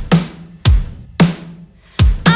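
Drum kit alone in a break of an indie pop song, the bass and vocals dropped out: a few separate kick and snare hits about half a second apart, each ringing on with cymbal wash.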